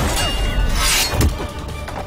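Dramatic soundtrack music under staged sword-fight sound effects. A sharp metallic clash comes near the start, a long swish just before a second in and a heavy hit just after, then the music carries on more quietly.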